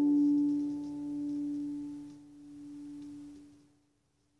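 The last note of a song ringing out: one sustained tone that swells and sags in three slow waves, growing fainter each time, and fades to silence about three and a half seconds in.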